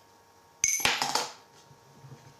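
A coin drops out of a tipped mug into a clear plastic cup of water: a sharp metallic clink with a brief ring about half a second in, followed by about a second of splashing, pouring water.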